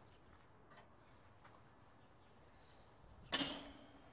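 Near silence, then about three seconds in a single short metal clatter that fades over half a second as the steel cooking grate is set down on the charcoal kettle grill.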